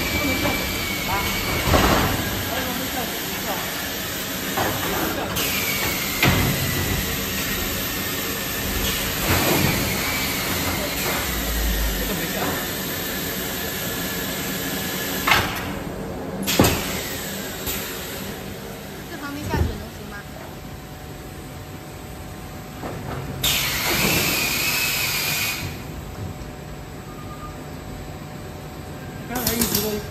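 Machinery noise from a PVC ball moulding line: a hiss that cuts in and out, a few sharp knocks, and a high whine that slowly falls in pitch.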